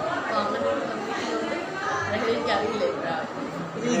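People talking, with voices overlapping in conversational chatter.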